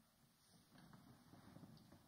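Near silence in a hall, with faint rustling of clothing and seats as audience members shift position.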